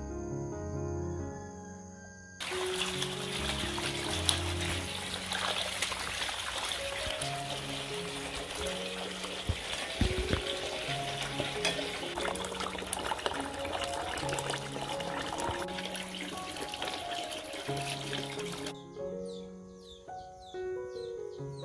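Water running and splashing as a bunch of leaves is washed by hand in a metal basin. It starts a couple of seconds in and stops shortly before the end, over light background music.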